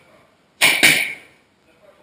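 Two quick strikes landing on a training pad, a quarter of a second apart, each a sharp loud smack.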